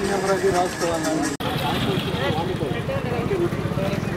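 People talking over one another outdoors. About a second and a half in, the sound cuts off abruptly for an instant, then voices carry on over a vehicle engine running.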